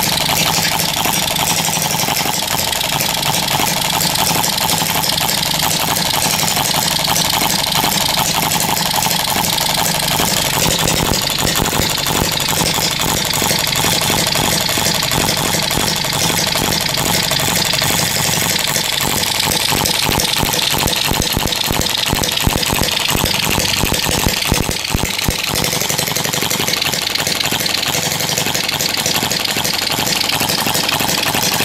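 Scale-model Associated Li'l Brother hit-and-miss gas engine running on battery spark ignition through a high-tension coil: a fast, even patter of firing strokes with the clatter of its small valve gear, its two flywheels spinning.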